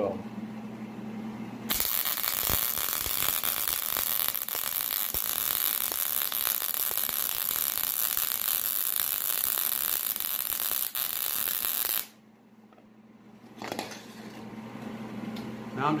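Wire-feed MIG welder running a bead on a steel snowblower shaft, a steady buzzing crackle of the arc that starts about two seconds in and cuts off suddenly about ten seconds later. The weld is building up material on the shaft.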